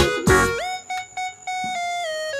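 Background music: an electronic keyboard tune with a beat in the first half second, then held synth notes after a quick upward slide.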